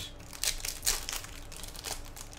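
Foil Yu-Gi-Oh booster pack wrapper crinkling and tearing as it is pulled open by hand, in irregular crackles that bunch up around half a second in and again near the end.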